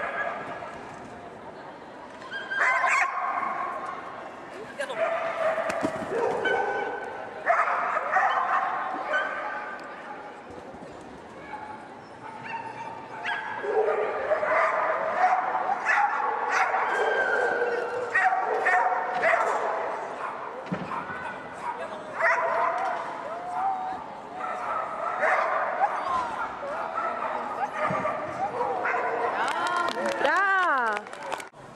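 Dogs barking and whining again and again, with the murmur of people talking in the background.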